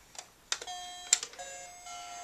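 Baby's plastic activity cube toy: a few plastic button clicks, then about half a second in an electronic tune starts playing, a string of plain beeping notes that step in pitch every half second or so.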